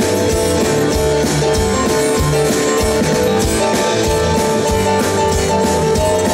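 Live rock band playing an instrumental passage: electric guitars, keyboards and bass over a drum kit, with held notes and a steady beat.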